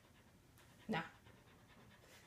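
Dog panting faintly, with one short vocal sound about a second in.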